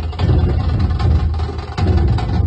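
A group of large dhol drums being played: a deep, loud drum beat with sharp, clicky strikes over it.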